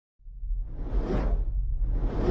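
Intro whoosh sound effect: a swoosh that swells up and fades away over a deep rumble, starting a fraction of a second in, with a second swoosh beginning near the end.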